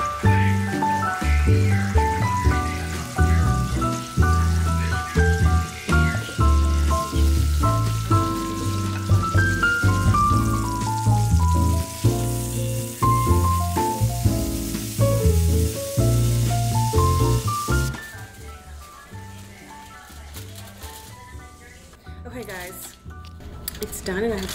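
Background music: a melody over a steady bass line, which drops away about 18 seconds in to a much quieter stretch. A woman's voice starts right at the end.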